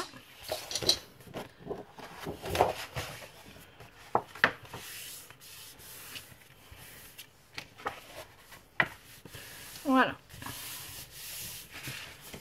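Sheets of 30x30 cm scrapbook paper being handled, folded and creased flat by hand on a cutting mat. The paper rubs and rustles, with a scatter of short, sharp paper sounds.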